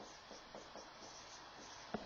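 Marker pen writing on a whiteboard: a run of short, faint strokes and squeaks, with a sharper tap of the tip on the board near the end.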